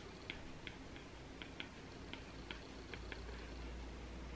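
Stylus tip tapping on an iPad's glass screen while handwriting, a string of faint, irregular ticks.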